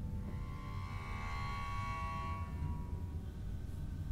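Eerie horror-film music: a low rumbling drone under a swell of high, sustained tones that rises about half a second in and fades away before the end.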